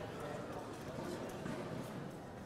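A murmur of indistinct voices echoing in a large hall, with scattered light taps.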